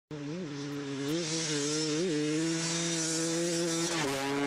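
Dirt bike engine running, with three short throttle blips in the first two seconds, then holding a steady pitch.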